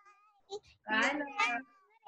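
High, sing-song voices calling out 'bye bye', one drawn-out and sliding in pitch near the start and a louder pair of 'byes' about a second in.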